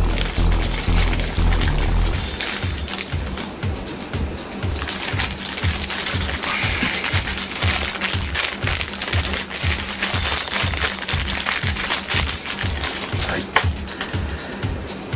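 Small plastic gashapon bag crinkling and rustling as it is opened by hand, over background music with a steady beat.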